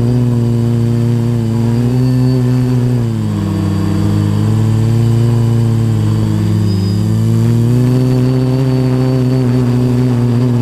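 A quadcopter's electric motors and propellers, heard from on board, with its props freshly balanced: a steady pitched buzz. The pitch dips about three seconds in and climbs back up around eight seconds in.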